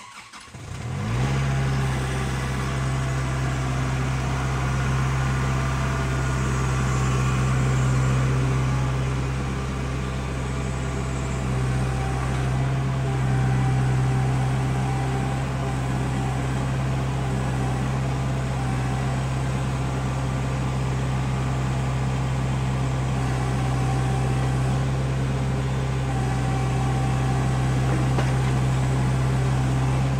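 Compact tractor's engine running at a steady speed while the tractor is driven and turned around.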